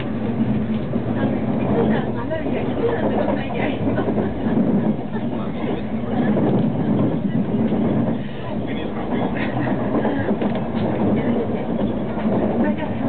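Passenger train running along the track, heard from inside the carriage as a steady rumble and hum, with passengers talking in the background.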